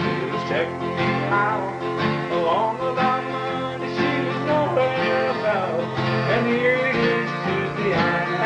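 Two acoustic guitars playing an instrumental break in a country song: a steady rhythm part underneath, with a lead line above it whose notes bend and slide in pitch.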